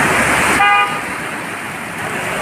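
Floodwater rushing and splashing as an SUV ploughs through it, with a short, single car-horn toot about half a second in.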